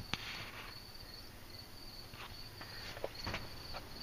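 Faint high-pitched insect chirping, a thin trill in short repeated pulses, with a few faint knocks and clicks scattered through.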